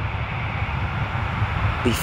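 Steady low rumble of outdoor background noise with no distinct events, broken only by a single spoken word right at the end.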